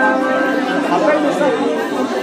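A pause in the oud playing: the last plucked notes ring out, then indistinct murmur of audience chatter fills the gap, with no clear words.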